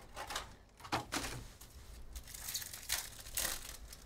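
Wrapper of a 2023 Topps Stadium Club baseball card pack crinkling and being torn open by hand, in a handful of short crackling rips.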